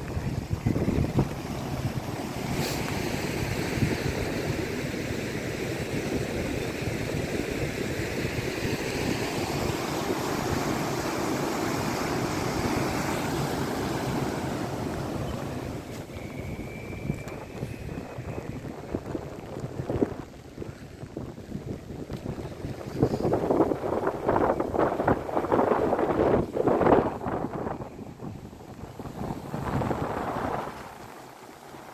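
Steady rush of a river in flood after heavy rain, with wind buffeting the microphone. About halfway through the rush drops lower and turns uneven, and strong gusts of wind hit the microphone in the last third.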